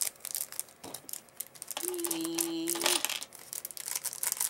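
Small plastic pieces of a squid keychain figure being handled and fitted together: scattered light clicks and crinkles. About two seconds in, a steady hummed note is held for about a second.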